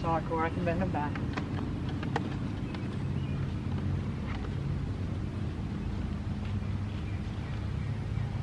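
Steady low rumble throughout, with a few sharp knocks and clatters of equipment being handled and unloaded from a vehicle's cargo area in the first couple of seconds.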